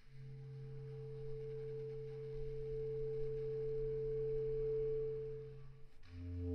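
Solo bass clarinet holding one long multiphonic: a low tone and a higher tone sounding together, steady in pitch. It swells gradually, then fades and stops just before the end.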